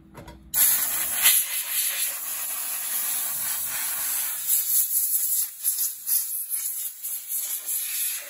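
Compressed-air blow gun hissing as it blows machining chips off a freshly milled metal ring. It starts sharply about half a second in and comes in uneven pulses in the second half, as the trigger is eased and squeezed.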